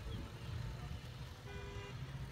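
Motorcycle passing with its engine running as a low rumble, and a short single horn toot near the end.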